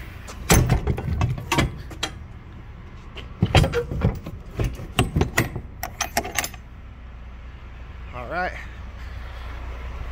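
A semi-truck cab door being handled while climbing out of the cab: a string of knocks, clicks and rattles, with a door shut about six seconds in, over the steady low hum of the idling rig. A short sound that rises and falls in pitch comes near the end.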